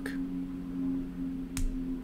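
A steady low hum of two tones, with a single sharp click about one and a half seconds in.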